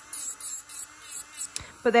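SUNNAIL electric nail drill running near its top speed of 35,000 rpm, its bit filing a nail in quick short passes: a scratchy high hiss with each pass over a faint steady motor hum. A sharp click about a second and a half in.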